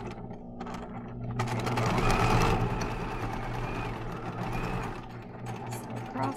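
Electric sewing machine stitching a seam through layered cotton fabric, easing off briefly about a second in and then running steadily.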